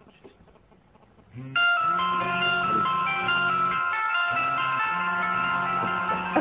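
Mobile phones ringing on incoming calls, electronic melody ringtones starting suddenly about a second and a half in and playing on steadily.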